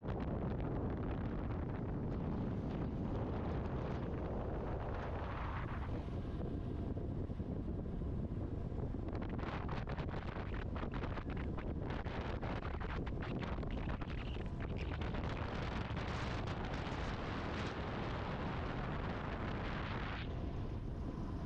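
Wind rushing over the microphone of a camera riding on a moving road bike, a steady rumbling roar with heavier buffeting in the middle.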